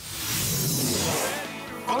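Cartoon sci-fi teleport-beam sound effect: a sudden, loud rushing whoosh with a high shimmer that dies away after about a second and a half, mixed with the score.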